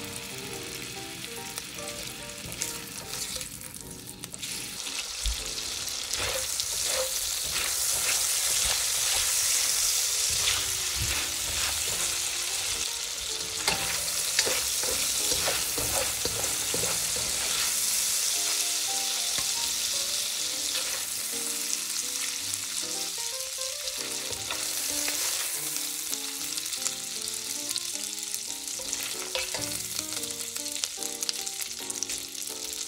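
Diced sausage sizzling in hot oil in a stainless steel pan, the frying growing louder about five seconds in. Through it come the clicks and scrapes of a spatula and slotted spoon stirring the pieces against the pan.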